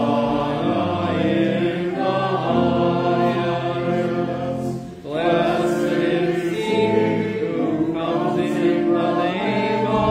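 A congregation singing a hymn together in sustained phrases, with a short pause between phrases about five seconds in.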